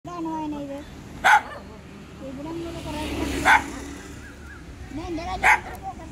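A dog barking three times, about two seconds apart, with people talking quietly in between.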